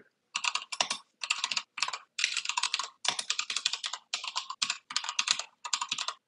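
Typing on a computer keyboard: quick runs of keystrokes with brief pauses between them.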